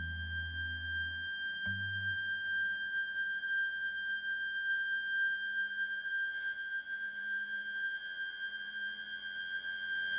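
Ambient electric guitar played through effects pedals: a steady, high held tone with fainter overtones above it drones on, while low notes underneath fade out within the first two seconds.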